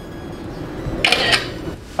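A camera shutter sound about a second in: one short, bright click, taken right after a call of "ready" for a picture.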